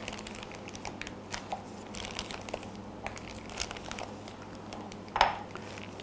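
Thin plastic piping bag crinkling as it is handled and filled with thick lemon cream from a silicone spatula, with small scattered scrapes and ticks and one short louder sound near the end.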